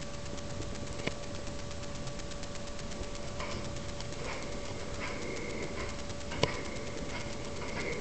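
Steady noise and a thin, faint whine from a low-quality handheld camera's own microphone, with handling rustle, faint scuffs, and two sharp knocks, about a second in and at about six and a half seconds.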